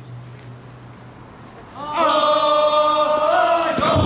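Insects trill steadily through a lull. About halfway through, a group of men's voices breaks into one long shout held in unison for nearly two seconds, ending with a sharp knock.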